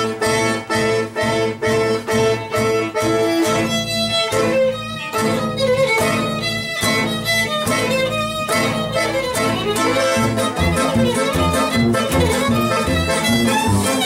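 Live acoustic jam: a fiddle plays the melody over acoustic guitar chords strummed in a steady rhythm, with a piano accordion filling in underneath.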